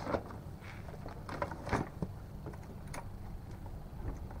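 Cardboard box being handled as a boxed hydraulic floor jack is slid out of it: a few scattered scrapes and knocks over a steady low background rumble.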